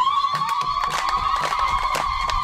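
Public-address microphone feedback: a loud, steady high whistle that cuts in suddenly, slides up a little at first, then holds one pitch.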